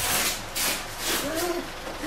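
A small child's brief wordless vocalisation, rising and falling in pitch, about a second in, with light rustling and shuffling before it.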